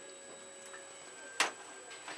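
A single sharp click about one and a half seconds in, with two faint ticks before it, over a low steady background with a thin high whine.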